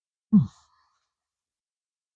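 A man's single short vocal sound, falling in pitch, about a third of a second in, made while eating.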